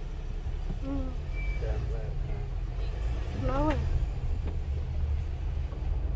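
Low, steady engine and road rumble heard inside a moving car's cabin, with brief bits of a voice about a second in and again around three and a half seconds in.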